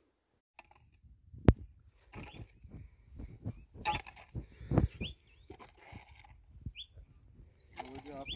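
Hand hoes chopping and scraping into loose field soil while an irrigation channel is cut, making irregular dull thuds and scrapes. There is a sharp knock about a second and a half in, and a few short bird chirps.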